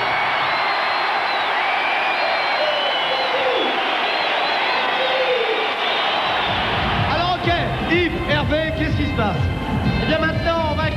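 Large arena crowd cheering. About seven seconds in, music with a heavy beat starts up, with a man's voice over it.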